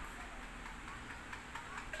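Quiet room tone: a faint steady low hum under light hiss.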